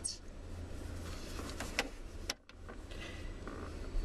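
Faint rustling and a few soft clicks of movement inside a car, over a steady low hum. The sound drops out briefly just past halfway.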